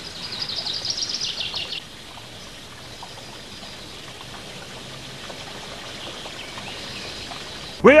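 Stream water from the Fuente Grande spring flowing steadily, with a bird giving a quick run of high chirps over the first two seconds. Near the end it cuts off abruptly to a burst of voice and music.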